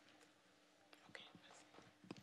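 Near silence: room tone with a faint steady hum and a few soft clicks about a second in.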